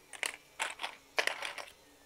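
Several light clicks and taps, spread irregularly over a second and a half, from small plastic blaster parts being handled.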